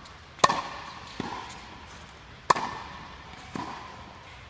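Tennis ball struck hard by a racket twice, about two seconds apart, each strike followed about a second later by a softer knock of the ball. The hits echo in an indoor hall.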